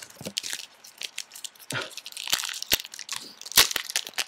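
Foil trading-card pack wrapper being crinkled and torn open, with sharp crackles that grow louder in the second half.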